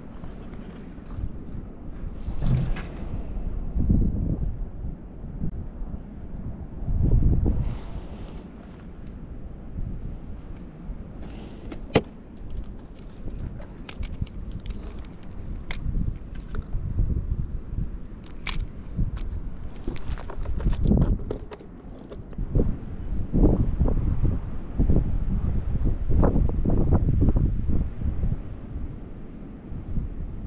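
Gusty wind buffeting the microphone in irregular low rumbles, heavier near the end, with scattered small clicks and knocks from handling fishing gear, including one sharp click about twelve seconds in.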